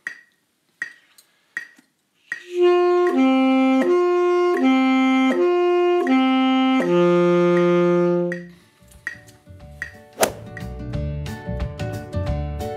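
A few soft evenly spaced clicks, then a saxophone plays a flexibility warm-up: short notes stepping back and forth between two pitches several times, ending on a long low held note that stops about eight and a half seconds in. Background music with a bass line follows near the end.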